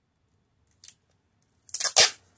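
Adhesive tape being pulled off its roll in a short, loud rip near the end, after a faint tick about a second in.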